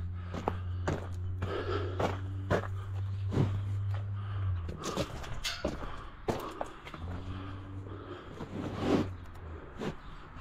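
Footsteps on gravel with knocks and rubbing as a hand-held camera is carried around a farm wagon, over a low steady hum that drops out about halfway through and comes back a couple of seconds later.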